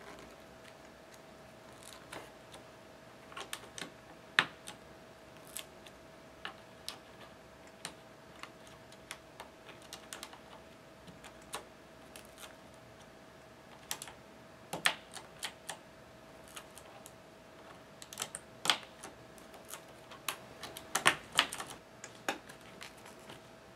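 Black translucent keycaps being pushed one after another onto the blue-stemmed Cherry MX switches of a Razer BlackWidow Ultimate 2013 mechanical keyboard: irregular sharp plastic clicks, some single and some in quick clusters, the busiest run near the end. A faint steady hum runs underneath.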